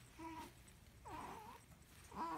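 Young baby cooing: two short vocal sounds, the second longer and wavering in pitch.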